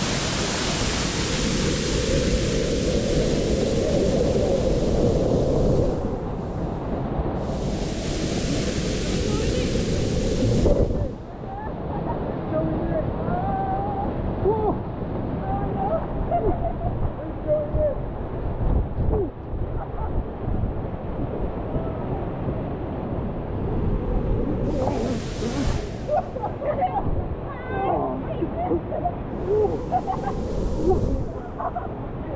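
Waterfall pouring onto rock right at the microphone, a loud, full rush of water that drops and turns duller about eleven seconds in. Faint indistinct voices come through the water noise later on.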